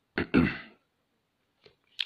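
A man clearing his throat once, a short rough sound lasting about half a second, just after the start.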